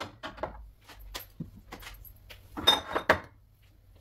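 Glass oil bottles being handled and set down: a string of light clicks and clinks, with a louder clatter about three seconds in.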